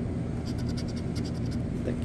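Scratch-off lottery ticket being scratched with a pencil-shaped scratcher: a quick run of short back-and-forth scrapes as the coating comes off one number spot.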